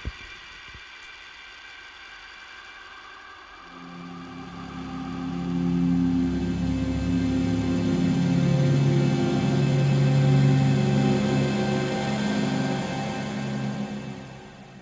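Haken Continuum fingerboard played: faint held high tones, then sustained low synthesized chords that swell in about four seconds in, hold, and fade out near the end.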